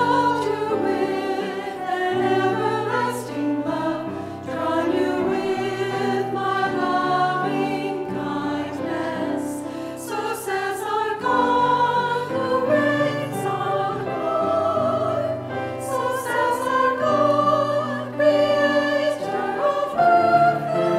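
Mixed choir of men's and women's voices singing a sacred piece in harmony, holding long notes that move from chord to chord.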